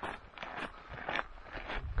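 Footsteps walking on a dry dirt-and-gravel trail: a quick, uneven series of short scuffs, several a second.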